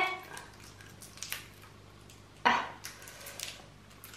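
A twist-wrapped hard candy being unwrapped by hand: faint crinkling of the wrapper, with one louder rustle a little past halfway.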